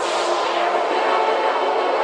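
Opening of a free tekno track: a dense, distorted synth texture with held tones, thin in the bass and with no kick drum yet.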